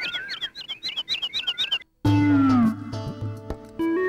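Birds chirping in quick, repeated short calls that cut off suddenly about two seconds in. Background music then starts with a falling tone and a low pulsing beat.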